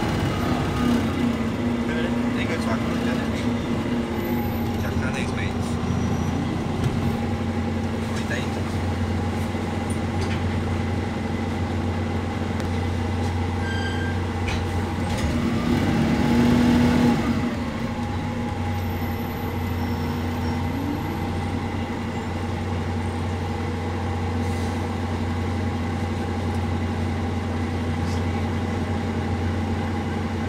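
Bus engine running, heard from inside the passenger cabin as a steady low drone with faint rattles from the body. About halfway through it swells louder as the bus accelerates, then drops back to its steady level.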